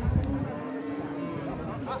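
A cow mooing: one long call of about a second and a half, its pitch rising slightly and then falling.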